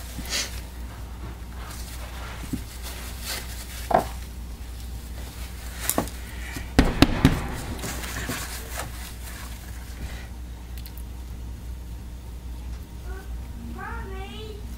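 Light clicks and knocks from handling a plastic soap mold and utensils, over a steady low hum, with a sharper cluster of clicks about seven seconds in.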